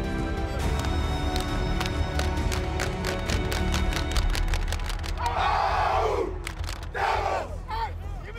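Soundtrack music with a deep bass and a fast ticking beat, then about five seconds in two loud group shouts: American football players in a huddle yelling a team chant together, the second one shorter.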